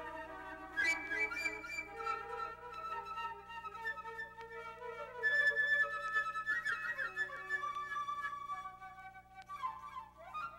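Solo flute playing a melody of held notes and short runs, with quick sliding notes near the end.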